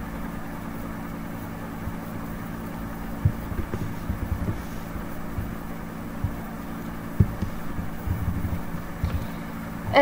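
Steady low electrical hum with a faint hiss, broken by a few soft low knocks, the clearest about three seconds in and a sharper one about seven seconds in.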